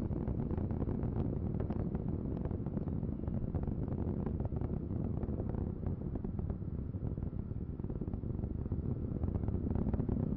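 Ares I-X's four-segment solid rocket motor burning in flight: a steady low rumble with constant crackle.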